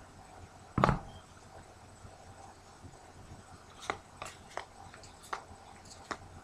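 Hockey trading cards being handled and flipped through by hand, with one loud knock about a second in and several light clicks of cards later on.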